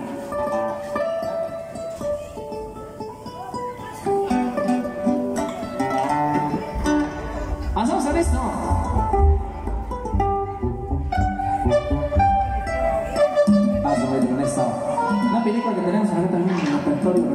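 Requested song played through a PA loudspeaker system, led by plucked string instruments. A deep bass comes in about seven seconds in and drops out about three seconds later.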